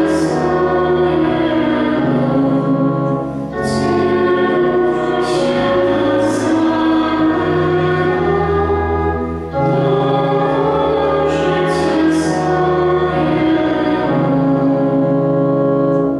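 Church pipe organ, with held chords and bass pedal notes, accompanying a sung hymn. The phrases break briefly about three and a half seconds in and again about nine and a half seconds in.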